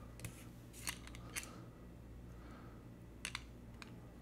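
A few faint, sharp clicks from an Esterbrook Estie fountain pen's spring-loaded cap as it is pushed in, twisted and pulled off: three spaced clicks in the first second and a half, then a quick double click near the end, over a low steady hum.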